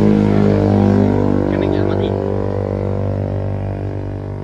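A loud, steady engine drone with a low hum, its pitch easing down slightly in the first second or so.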